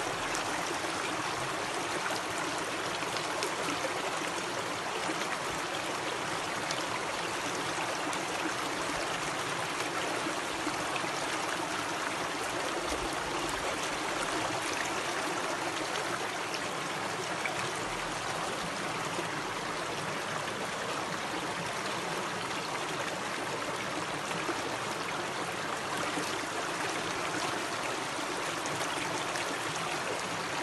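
Shallow stream water running over stones, heard close up as a steady, unbroken rush.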